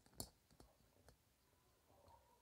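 Near silence, broken by one short click of a whiteboard marker touching the board near the start, then a couple of much fainter ticks.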